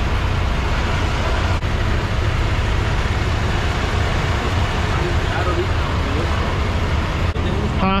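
Steady low rumble of idling truck engines, with an even noisy hiss over it and faint voices in the background.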